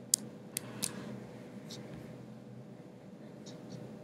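Low steady electrical hum of a recording room, with three short, sharp clicks in the first second and a few fainter clicks later on.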